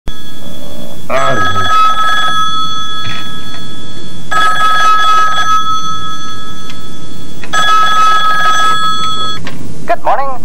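Hotel room push-button desk telephone ringing with a wake-up call: three rings of about a second each, spaced about three seconds apart, in a steady high electronic tone. A short falling sweep is heard just before the first ring.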